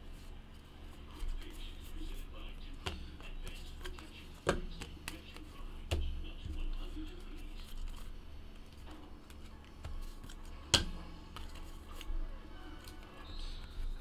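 Trading cards being handled by hand: flicked through, slid and set down on a table, with several sharp clicks and taps, the loudest about 11 seconds in.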